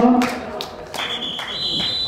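Referee's whistle blown about a second in, one long shrill blast that steps up slightly in pitch partway through, blowing the play dead. A shout trails off at the very start.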